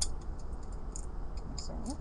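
A few light metallic clicks and ticks from a key being worked in a fish-shaped Chinese padlock: a sharp one at the start, another about a second in and a couple near the end, over a steady low hum.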